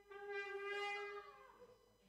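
Shofar (ram's horn) sounding one held blast that starts right at the beginning, stays steady, then sags downward in pitch and dies away about a second and a half in.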